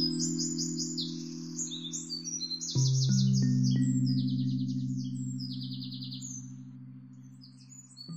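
Background music of sustained synthesizer chords, with a new chord about three seconds in and a gradual fade, and bird chirps and trills over it.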